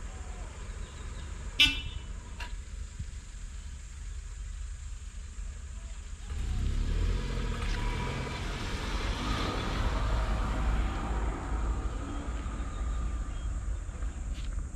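A small hatchback car drives up and passes close by, its engine and tyre noise rising sharply about six seconds in and holding for several seconds before easing. Near the start there is a single short, sharp toot, the loudest moment.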